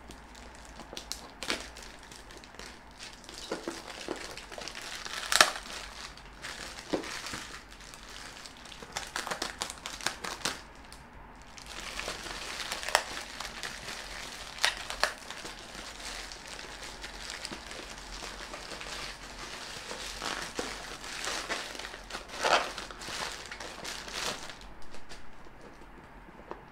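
Plastic courier pouch and its packing tape crinkling and crackling as it is cut and pulled open by hand, with frequent sharp snaps; the loudest snap comes about five seconds in.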